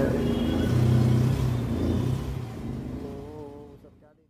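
Low rumble of a vehicle engine, with a short held pitched tone about three seconds in, fading out at the very end.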